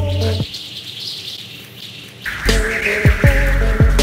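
Background music with a heavy beat and deep bass. A little after the start the beat drops out for about two seconds, leaving only a thin high layer, then comes back in with a rising swell of noise.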